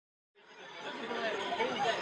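Many overlapping voices chattering together, no words clear, fading in from silence about a third of a second in and growing louder.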